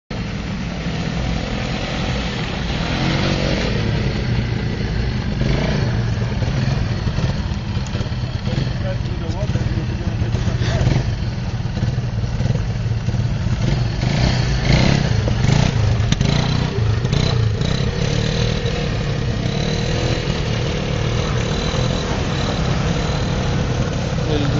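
ATV engine running steadily close by, with a low, continuous hum and indistinct voices over it.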